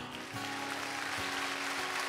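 A congregation applauding, a thin and fairly quiet round of clapping, over a soft held chord from the band. The applause is weak: "terrible", not as loud as the earlier service.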